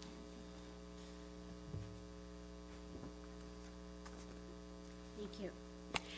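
Steady electrical mains hum, a constant buzz made of several evenly spaced tones, faint throughout. A brief "thank you" is spoken near the end.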